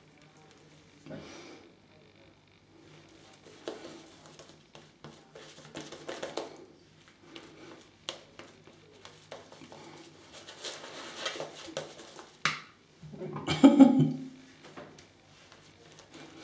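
Synthetic shaving brush working soap lather over the face: soft, uneven wet swishing and rubbing strokes, with a louder burst near the end.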